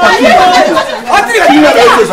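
Several people talking and shouting over one another, loud and agitated, with no pause.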